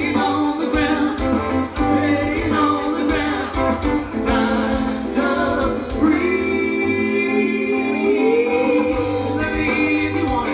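A live band playing with singing, recorded from the crowd on a camera microphone. A long held note comes in about six seconds in and bends upward near the end.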